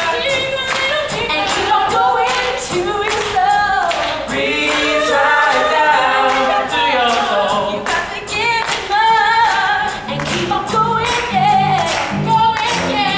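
A stage-musical cast singing a number together over accompaniment with a steady beat; low notes come in near the end.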